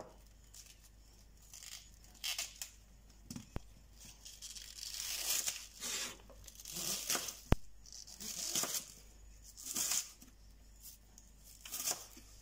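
Chef's knife slicing through a raw onion on a wooden cutting board: irregular crisp cuts a second or two apart. Twice the blade knocks sharply on the board, the second knock the loudest sound.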